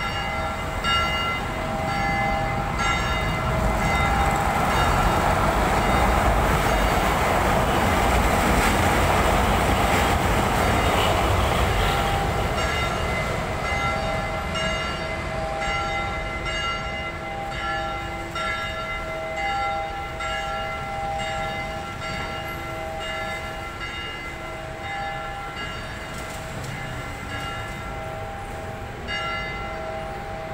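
An LRT Line 1 train passing on the elevated track: a rumble that swells to its loudest about eight to ten seconds in, then slowly fades, with steady high tones over it.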